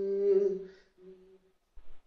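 A man singing unaccompanied, holding a last hummed note that fades out just under a second in, with a short faint note after it. Heard through a TV speaker. A brief soft low thump comes near the end.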